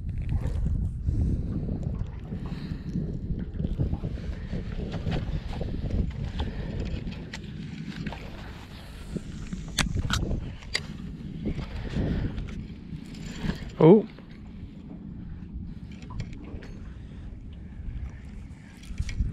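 Wind buffeting the microphone over open water while an angler handles fishing tackle on a small boat, with a few sharp clicks around ten seconds in as the spinning rod and reel are picked up. Near the end comes one short, loud squeak that slides up and down in pitch.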